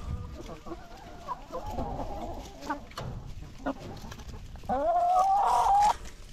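A flock of chickens clucking softly. Near the end one bird gives a loud, long call that rises and then holds its pitch for about a second before cutting off.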